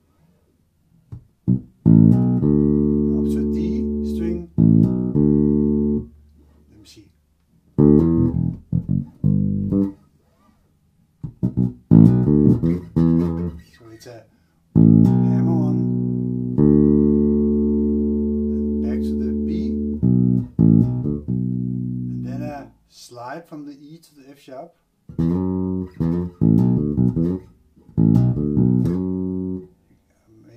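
1978 Music Man StingRay electric bass through an amp, played slowly in short phrases of an E minor line, with pauses between them. Some notes are held ringing for several seconds.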